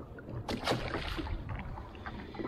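A small snapper splashing into the sea about half a second in, over water lapping against a jet ski's hull.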